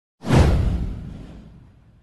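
A whoosh sound effect from an animated title intro. It starts suddenly, sweeps downward in pitch over a deep low tail, and fades out over about a second and a half.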